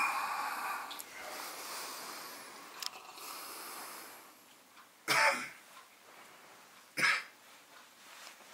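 A person coughing twice, about five seconds in and again about two seconds later, over a faint steady hiss.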